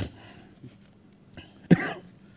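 A man coughs once, short and sharp, about three-quarters of the way in, during a quiet pause in his speaking.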